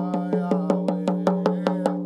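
Hand-held rawhide frame drum beaten in a fast, even rhythm, about five beats a second, under a man singing a long held chant note.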